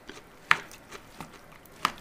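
A spatula stirring chopped salsa in a glass bowl, with a few sharp knocks as it strikes the bowl. The loudest come about half a second in and just before the end.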